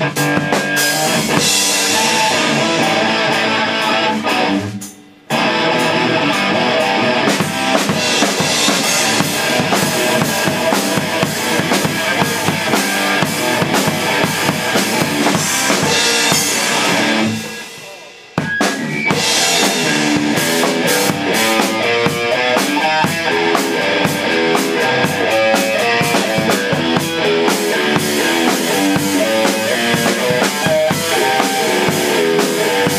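Rock drum kit and electric guitar playing together, loud and dense. The music dies away twice, about five seconds in and again around seventeen seconds, and each time the band comes straight back in.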